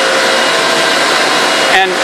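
Pumps and motors of a reverse osmosis desalination plant running, a loud steady whir with a few faint steady hum tones in it.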